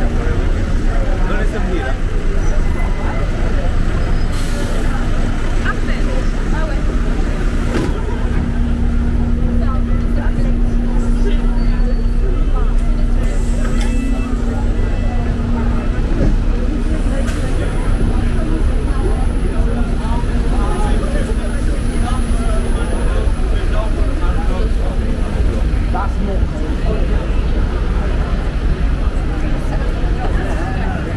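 Street traffic with a double-decker bus's engine running beside the pavement, a steady hum that fades out about two-thirds of the way through, under passers-by talking.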